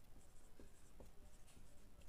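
Faint short strokes of a marker pen writing letters on a whiteboard.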